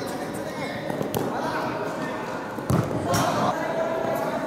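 Football being dribbled and kicked on a hard indoor court, giving a few sharp thuds, the loudest about two and a half seconds in. Indistinct voices run underneath.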